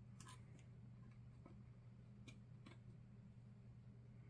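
Faint, scattered clicks and taps, about six in all, from small metal parts of a die-cast metal toy cap pistol being handled and worked on. A steady low hum runs underneath.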